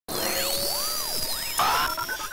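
Short electronic intro sting: several synthetic tones sweep up and down over a hiss, then a brighter chord comes in about a second and a half in.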